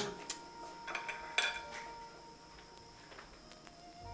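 A few light clinks of plates and cutlery as food is served from the dishes, the loudest about a second and a half in.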